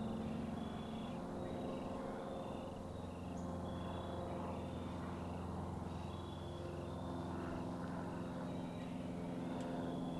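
A steady low engine-like drone, as from distant traffic or machinery, under insects chirping in short high pulses that repeat a few times a second.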